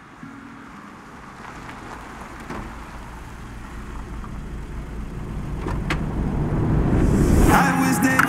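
A car pulling up on a wet city street: a low traffic rumble builds steadily louder, with a sharp click about six seconds in. Music comes in near the end.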